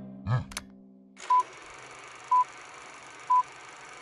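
Film countdown leader: three short, identical high beeps exactly a second apart over a steady hiss like an old film soundtrack. A brief louder sound comes just before, about a third of a second in.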